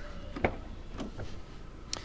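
Door of a 2005 VW Lupo GTI being opened by hand: a few short clicks of the handle and latch, the sharpest just before the end.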